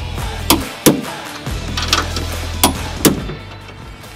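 Background music with a beat, over sharp metallic clicks in two pairs from a click-type torque wrench tightening the rear strut top nuts.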